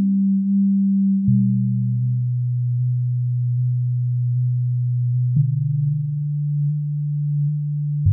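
Aphid DX FM software synthesizer playing its Vibugphone preset: low, almost pure held notes that overlap. A new note enters with a short click about a second in, and another a little past five seconds.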